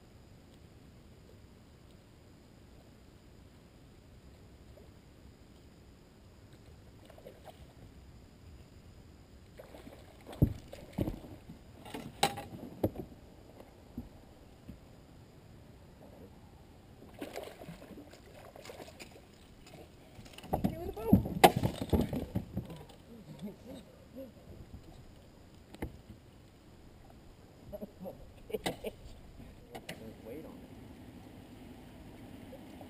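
Activity on a small bass boat while a hooked fish is played on a bent rod: bursts of handling noise and a few sharp knocks, loudest a little after two-thirds through, after several quiet seconds at the start.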